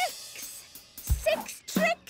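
Cartoon sound effect of a die being rolled: a sharp start and a rattling noise that fades within about half a second. A few short high chirps follow in the second half.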